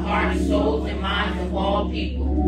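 A congregation's voices together in unison, with a steady held chord underneath.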